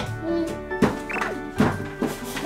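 Background music, with a few dull thumps as a toddler climbs onto and over a white plastic climbing frame and slide.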